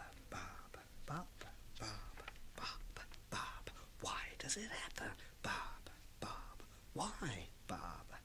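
Quiet whispering by a man, repeating one short word over and over, about one or two whispers a second.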